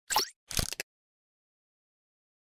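Two short pop sound effects from an animated title graphic, about half a second apart, the second a quick flurry of clicks, both within the first second.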